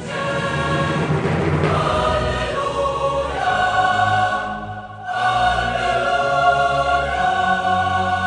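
Background choral music: a choir holding long sung notes over a low bass accompaniment, with a brief break about five seconds in.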